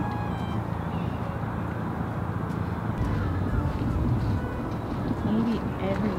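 Street traffic noise with a steady engine hum that fades out after about four seconds.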